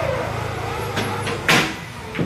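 A sharp clack of billiard balls striking about one and a half seconds in, the loudest sound, with a fainter click about a second in. Under it runs a low steady engine-like hum that drops away soon after the clack.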